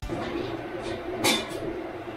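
Steady room noise from a bank of Anet 3D printers preheating, with one sharp click about a second in.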